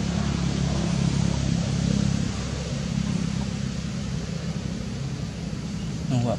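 A steady low hum of an engine running nearby, with a noisy hiss over it.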